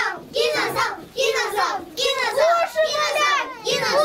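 Children talking in high-pitched voices, one quick phrase after another.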